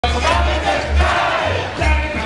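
Crowd of street protesters shouting and chanting together, many voices overlapping, with a deep low rumble pulsing underneath.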